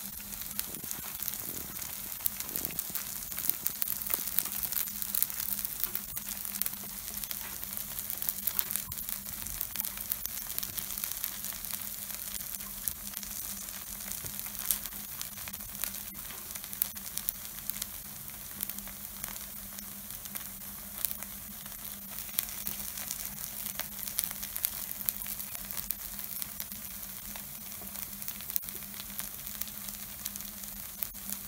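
Takoyaki batter balls sizzling in the oiled cups of a takoyaki hot plate, a steady hiss with many small crackles and pops as they finish cooking. A low steady hum runs underneath.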